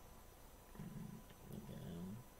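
A man's voice, low and muffled, in two short murmurs about a second apart, over faint room tone.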